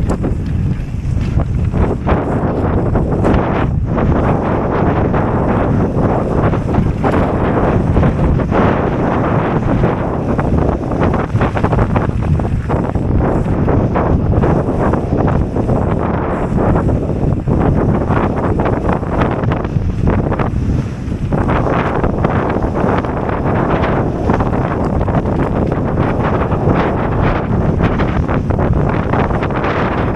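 Mountain bike descending a rough dry dirt singletrack at speed: heavy wind noise on the camera's microphone over tyre rumble, with frequent short knocks and rattles as the bike hits bumps.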